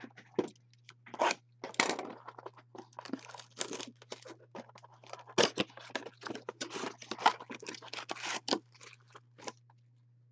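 A cardboard trading-card blaster box being torn open by hand and its foil packs pulled out: a run of irregular tearing, crinkling and scraping noises, loudest about five and a half and seven seconds in.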